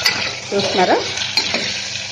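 A metal spoon stirring whole ivy gourds (dondakaya) frying in hot oil in an aluminium pressure-cooker pan, with a steady sizzle and scraping against the pan. A short squeak sounds just before a second in.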